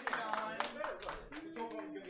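A few people clapping in a small room, a quick run of sharp claps fading out about halfway through, with faint voices behind.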